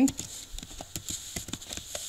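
Typing on a computer keyboard: a quick run of light keystrokes, about five a second, as the word "January" is typed.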